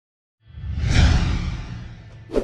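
A whoosh sound effect over a low rumble: it comes in about half a second in, swells to a peak around one second, then fades away.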